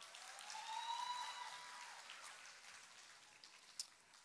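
Faint audience applause, a dense patter that swells about a second in and then fades away, with a faint thin held tone above it near the start.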